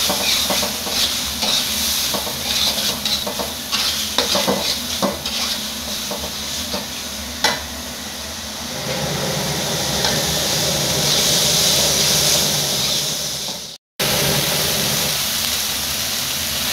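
Sliced chilies, onion and spice paste sizzling in hot oil in a metal wok while a metal spatula stirs and scrapes against the pan. The scrapes come thick and fast in the first half, then a steadier sizzle takes over from about nine seconds in, broken by a brief cut to silence near the end.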